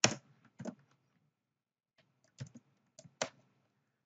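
Computer keyboard being typed on in short, sparse runs of keystrokes: three clicks in the first second, a pause of over a second, then four more in the second half.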